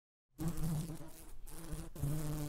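Cartoon sound effect of a flying bug buzzing, starting about a third of a second in after a moment of silence.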